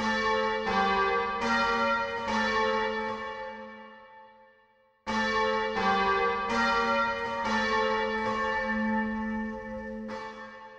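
Bells struck in two short runs of about four strokes each, less than a second apart. Each run rings on and fades away, the first dying out to near silence before the second begins about halfway through.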